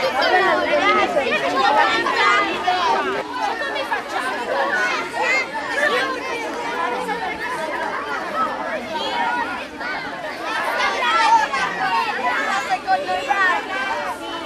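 Many children's voices talking at once: a steady, overlapping, high-pitched chatter in which no single voice stands out.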